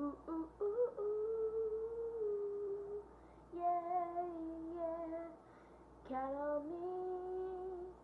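A child's voice singing three long held notes without words, with short pauses between them; the last note slides up before it holds.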